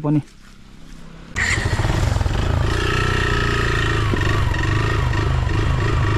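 Motorcycle engine running while the bike is ridden, with wind rushing over the handlebar-mounted camera's microphone. It starts abruptly about a second in and holds steady; before that there is only a faint low hum.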